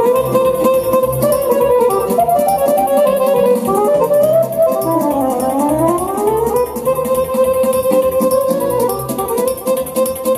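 Instrumental sârbă, a fast Romanian folk dance tune, played by a band with a lead melody over a steady bass beat. About halfway through, the lead line bends down in pitch and glides back up.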